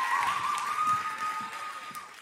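Audience applause, a noisy patter of many claps, with a single held high tone over it, fading away over the second half.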